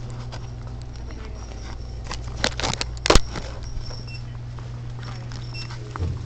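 Footsteps and phone-handling knocks over a steady low hum, with a cluster of louder knocks about three seconds in.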